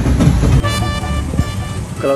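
Boat outboard motor running steadily, a level hum with a high whine. It follows a brief low rumble in the first half second.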